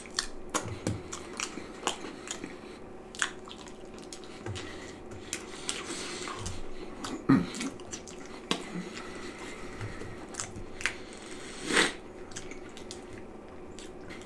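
A person chewing a mouthful of cheese pizza topped with pork and beans, with frequent short wet clicks of lips and tongue; two louder ones come about halfway and near the end.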